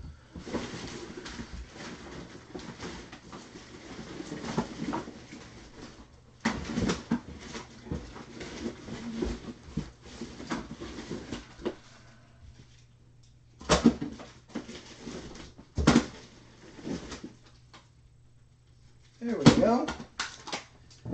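Rummaging and handling noise off microphone during a search for magnetic card holders, with two sharp knocks a couple of seconds apart in the second half, and muffled speech.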